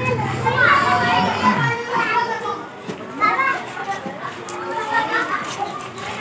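Children's voices chattering and calling out in a street, with other people talking among them.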